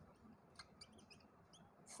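Faint squeaks of a marker pen writing on a whiteboard: a run of short, high-pitched squeaks in quick succession.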